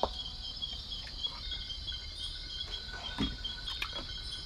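Steady chorus of night insects chirping, a high pulsing chirp repeating evenly throughout, with a couple of soft knocks near the end.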